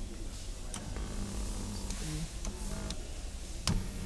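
Quiet truck cabin with a low rumble and a faint, steady hum, then a single sharp click near the end as a power seat adjustment switch is pressed.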